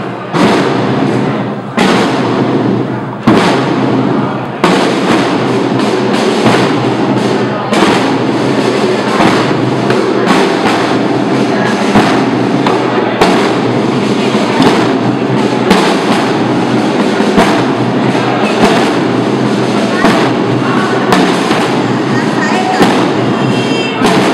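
Semana Santa drum and bugle band (tambores y cornetas) playing a slow processional march, with heavy drum strikes about every second and a half under sustained bugle notes.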